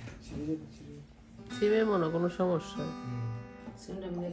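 Strings of a steel-string acoustic guitar being plucked and strummed, with a chord left ringing for about a second after the middle. A voice, the loudest sound, comes in just before the ringing chord.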